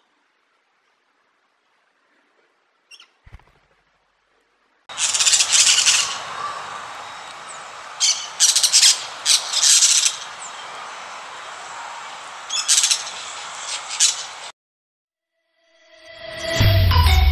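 Parakeets calling in harsh, loud bursts over a steady outdoor hiss, starting about five seconds in, with clusters of calls and pauses between them. Before that there is near silence with a couple of faint chirps.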